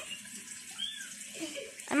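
A quiet lull of low background noise with a faint distant voice about a second in, before a voice starts speaking near the end.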